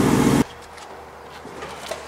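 Ford F-150 pickup's engine running steadily at low speed as the truck rolls past close by, cut off abruptly about half a second in, leaving only faint background noise.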